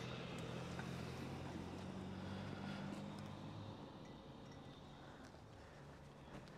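A faint, low vehicle engine hum that fades out about four seconds in.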